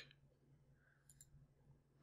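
Near silence: faint room tone with a steady low hum, and one faint computer mouse click a little past halfway.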